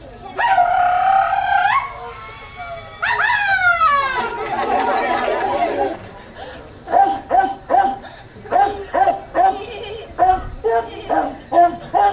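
A man imitating a dog: a long held howl that rises in pitch at its end, a second howl sliding down in pitch, then a run of short barks, about two to three a second.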